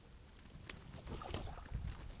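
Faint sounds of handling in a fishing boat: a single sharp click a little under a second in, then scattered low knocks and rumble.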